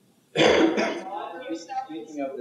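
A person clears their throat sharply about a third of a second in, then indistinct talking follows.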